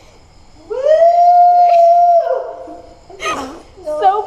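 One long, high, howl-like call from a voice. It rises into its note just under a second in, holds steady for about a second and a half, then trails away. A short noisy burst follows a little after three seconds.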